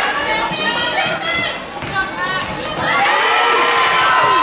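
Basketball being dribbled on a hardwood indoor court, with short high squeaks, over the voices of a crowd in the stands; the crowd gets louder about three seconds in.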